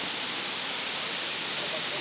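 Steady rush of water running over stones in a rocky stream near a small waterfall.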